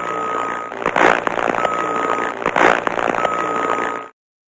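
End-card sound effect: a crackling, hissy noise with a thin steady whistle tone that sounds three times and a louder swish about a second in and again near three seconds, cutting off abruptly at the end.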